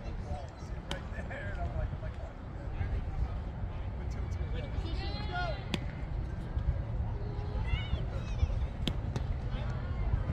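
Distant shouts and calls of players and spectators at a baseball game over a steady low rumble of wind on the microphone, with three sharp knocks: about a second in, near the middle, and near the end.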